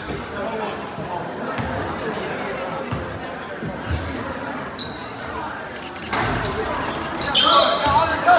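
Basketball bouncing on a gym's hardwood floor, a few separate bounces, under steady crowd chatter in a large hall. The crowd noise grows louder near the end as play resumes.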